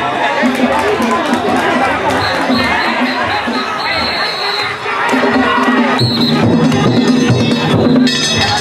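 Danjiri festival noise: a crowd of float-pullers shouting as they run, over the float's rhythmic drumming. A high, steady whistle-like tone sounds for a couple of seconds in the middle and again briefly about six seconds in.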